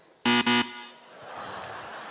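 Lie-detector buzzer sounding twice in quick succession, short harsh buzzes a quarter-second in, signalling that the answer just given is a lie.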